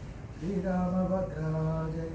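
A man chanting a mantra into a microphone in long, drawn-out notes on a near-steady pitch. After a brief pause for breath at the start, the next note begins a step higher and drops back down about a second later.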